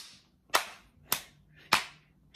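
Three sharp hand claps, evenly spaced a little over half a second apart.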